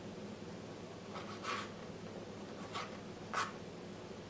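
Kitchen knife cutting soft fried ripe plantain and scraping across a plastic cutting mat: three short strokes, the last the loudest, over a faint steady hum.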